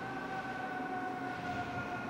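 A sustained tone with overtones, sinking slowly and slightly in pitch, over a steady rumbling hiss.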